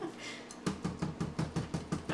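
Rapid, even tapping, about six knocks a second, starting a little over half a second in: a silicone spatula knocked against the blender jar to shake off almond butter.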